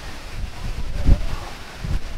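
Wind buffeting the microphone: a low rumble, with one stronger gust about a second in.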